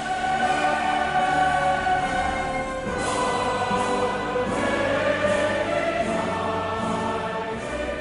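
Choral music with orchestra: a choir singing long held chords over a full accompaniment.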